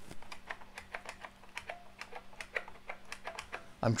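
Computer keyboard keys being pressed in a quick, irregular run of clicks, stopping shortly before the end.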